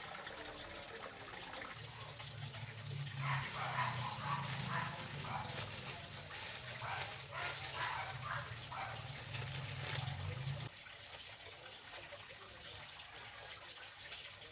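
Plastic bag liner rustling as it is handled and snipped with scissors, over a steady low hum that stops abruptly about ten and a half seconds in, with faint repeated calls in the background midway.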